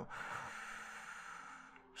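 A person's long breath close to the microphone, fading away to near silence.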